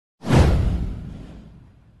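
Whoosh sound effect for an intro animation: a sudden rush with a deep low end that sweeps downward in pitch and fades out over about a second and a half.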